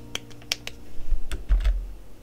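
Computer keys tapped: about half a dozen sharp clicks spread out, with a few low thuds in the second half. The song's last held notes stop right at the start.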